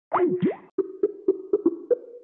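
A sound effect heard over a telephone line: quick sliding pitch sweeps down and up in the first half second, then a steady low hum broken by a string of short clicks.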